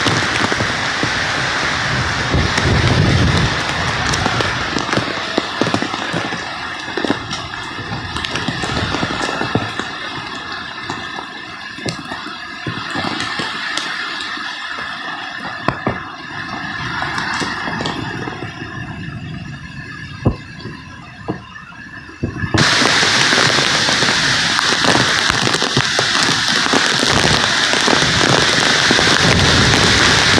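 Typhoon rain and wind: a rough rush of rain with many sharp taps and crackles of drops and debris striking leaves and sheet-metal roofing. About 22 seconds in it changes abruptly to a louder, steady downpour with wind.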